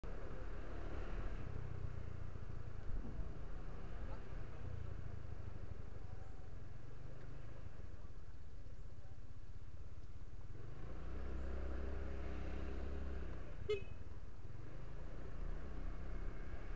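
Road traffic with a steady low engine rumble, heard while moving through a busy street. A short horn beep sounds near the end.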